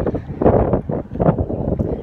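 Wind blowing across a handheld phone's microphone, coming in uneven gusts.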